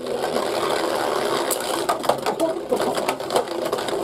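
Two Beyblade Burst spinning tops, Z Achilles and Winning Valkyrie, spinning and skittering in a plastic Beyblade stadium. They make a steady whirring rattle broken by a few sharp clacks.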